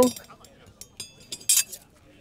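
Thin stainless steel camp stove panels clinking and scraping against each other as they are handled and fitted together: a ringing clink about a second in, a couple of small clicks, then a short sliding scrape.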